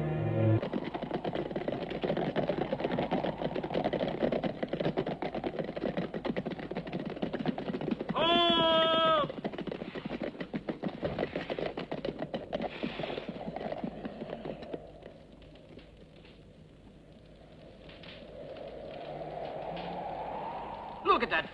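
A group of horses galloping, a fast dense clatter of hoofbeats mixed with film music. A short wavering cry rises loud above it about eight seconds in. The hoofbeats fade away after about fourteen seconds.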